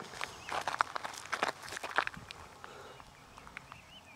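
Footsteps crunching on gravel, a quick run of steps in the first two seconds, then fainter.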